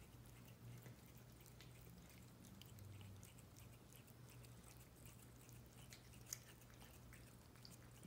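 Near silence with sparse, faint wet clicks of a cat chewing and licking at a snack, one sharper click about six seconds in, over a faint low hum.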